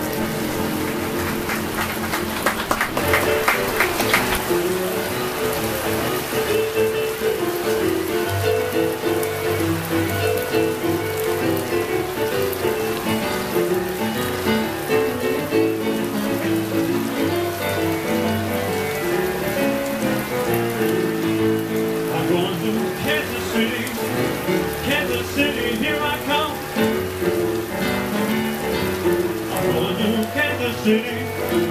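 Two digital pianos playing a boogie-woogie blues instrumental passage together: a busy rolling bass line under chords and runs, with bright repeated treble figures in the last several seconds. A steady hiss of rain sounds behind the music throughout.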